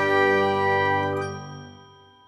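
A bell-like chime chord from an animated logo intro, its many tones ringing on and fading away over the last second.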